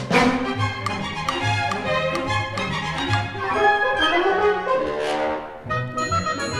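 Orchestral soundtrack music with brass and strings, opening on a sharp hit. Near the end comes a rising sweep and a brief drop in loudness before the music carries on.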